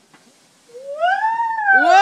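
A long, high-pitched vocal cry that starts about a third of the way in, rising and then falling in pitch. A second, lower voice joins near the end.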